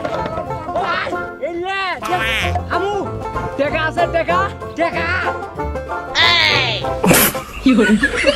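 Upbeat comic background music with repeated sliding-pitch, cartoon-style sound effects, and a sudden burst of noise about seven seconds in.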